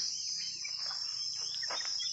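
Steady, high-pitched insect chirring, with a few faint short sounds near the end.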